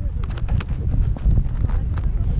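Wind buffeting an action camera's microphone, a steady low rumble, with a few faint clicks in the first second.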